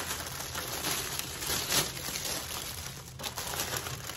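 Clear plastic packaging crinkling and rustling irregularly as stacked plastic trays are handled inside the bag.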